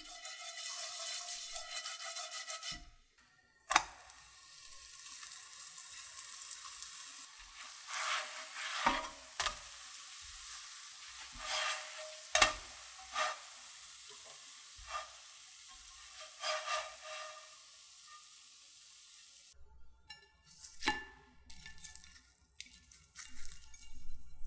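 Garlic paratha frying in oil in a non-stick pan: a steady sizzle with sharp scrapes and knocks now and then as the bread is pressed and turned with a spatula. At the start a brush swishes oil across the pan. Near the end the crisp layers crackle as the fried bread is pulled apart by hand.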